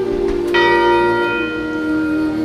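A single bell strike about half a second in, ringing out and fading over about a second, over a held note of slow background music.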